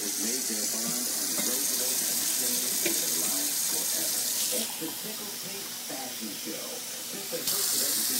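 Kitchen faucet running into a stainless steel sink and a glass measuring cup, cutting off about halfway through; running water starts again near the end.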